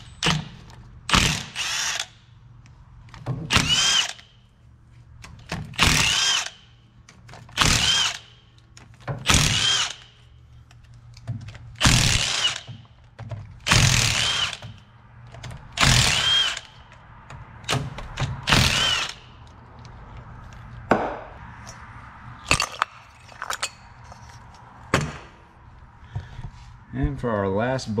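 Milwaukee Fuel cordless impact wrench running the half-inch bolts out of a rear differential cover in short bursts, one after another, about ten in the first twenty seconds, each with a motor whine that rises and falls. A few light clicks follow near the end.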